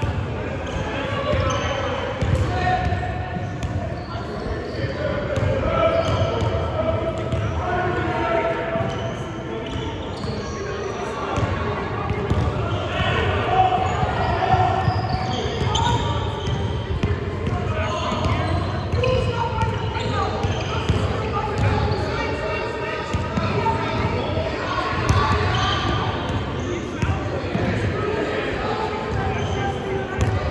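Indistinct voices of players and coaches echoing in a large gym, with a basketball bouncing on the hardwood floor.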